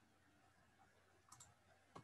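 Near silence with a few faint computer mouse clicks: a quick double click a little past halfway and a single click at the end.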